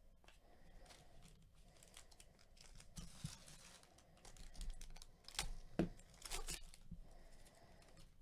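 A trading-card pack's wrapper being torn open and crinkled by hand: scattered crackling, busiest and loudest a little past the middle.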